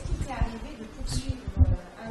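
Irregular muffled low thumps and rumbles of handling noise close to a lectern microphone, with a faint murmured voice underneath.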